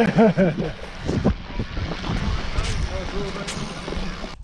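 A short laugh at the start, then rustling and rumbling of a hand-held camera being moved about close to its microphone, with a few sharp clicks and knocks.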